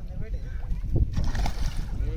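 A splash in the water lasting under a second, starting about a second in, over wind rumbling on the microphone.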